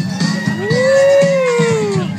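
A long howling voice over loud dance music with a steady beat. The howl rises in pitch, holds, then sags over about a second and a half.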